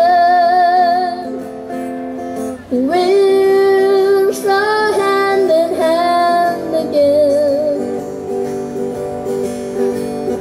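A boy singing live with vibrato on his held notes, accompanying himself on a strummed acoustic guitar. The voice drops back for about a second and a half and returns strongly near three seconds in.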